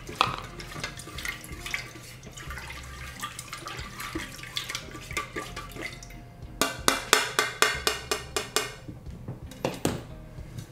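Kitchenware handled on a countertop: cups and a metal wax-pouring pitcher set about with small clatters. Then melted soy wax is stirred in the pitcher with a spatula, which knocks against its sides about five times a second for a couple of seconds, about two thirds of the way in.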